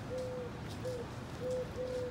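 A dove cooing: a run of short, even hoots on one low pitch, about four in two seconds.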